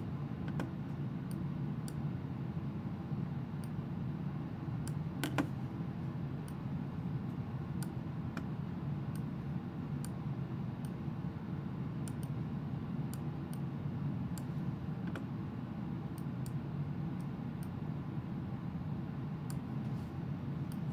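Scattered sharp clicks of a computer mouse and keyboard, irregular, roughly one a second, with a louder one about five seconds in, over a steady low room hum.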